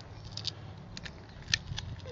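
A handful of light plastic clicks and crackles as a DJI Spark battery's casing is pulled apart, its cell held in by strong double-sided tape.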